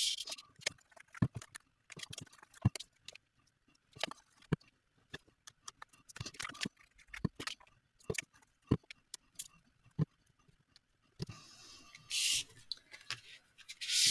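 Hands handling cut paper and card on a wooden tabletop: scattered light taps and clicks as pieces are picked up, placed and pressed down onto card bases, with a short papery slide or swish near the end.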